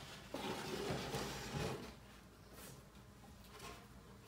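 Wooden hive box being handled and shifted on a wooden workbench, with a plastic speed square set against it: a rubbing, scraping sound lasting about a second and a half, then a few faint knocks.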